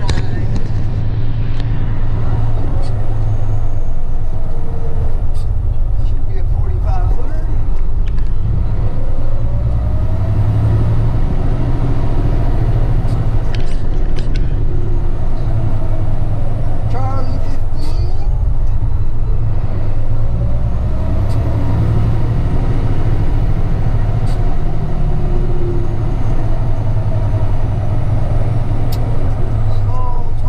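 Truck engine running while the truck drives through a yard, heard from inside the cab. There is a steady low rumble, and the engine pitch rises and falls a few times.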